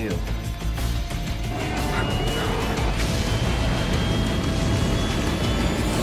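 Movie soundtrack: dramatic music over the steady low rumble of fighter jet engines in a high-altitude climb.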